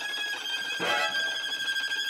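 String quartet playing: a high note held steady throughout, with a new bowed note entering a little under a second in.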